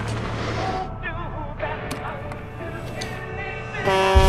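Car cabin with the engine idling in a low steady hum while a song plays quietly on the car radio and voices murmur faintly.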